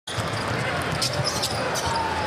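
A basketball dribbled on a hardwood arena court, bouncing a few times a second over the steady noise of the crowd.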